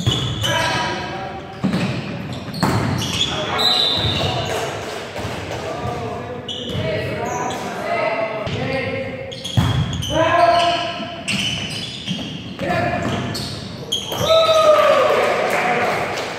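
Indoor volleyball rally: the ball is struck sharply several times in passes and an attack, with players shouting short calls and cheers that echo in a large gym.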